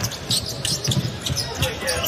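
A basketball being dribbled on a hardwood court: a run of several quick bounces over the arena din.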